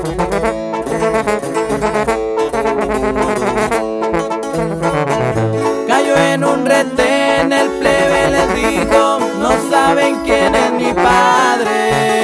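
Instrumental interlude of a regional Mexican corrido: the band plays a melody over a bass line, with no singing.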